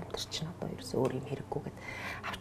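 Speech only: a woman talking quietly in Mongolian, with short gaps between words.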